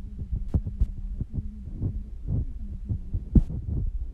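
Irregular low thumps and knocks with three sharp clicks, the loudest over three seconds in, above a steady low hum.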